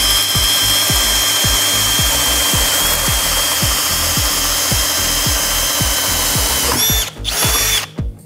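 Hercules cordless drill boring a spade bit into a wooden timber. The motor runs steadily under load with a high whine for about seven seconds, stops, runs again briefly, and stops near the end.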